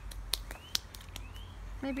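Sticky homemade slime being pulled and kneaded by hand, giving a scatter of sharp little clicks and smacks; the slime is still very sticky. A bird's short rising chirps sound in the background twice, and a child starts speaking near the end.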